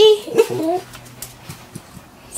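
A small dog gives short rising whines about half a second in.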